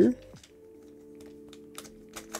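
Plastic pieces of a Lanlan curvy rhombohedron twisty puzzle clicking as its layers are turned by hand: a few light clicks, mostly near the end, over soft background music.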